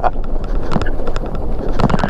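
Wind buffeting the microphone while a Daymak electric pit bike rides over snow, with repeated short knocks and rattles from the bike jolting across the rough, snowy ground.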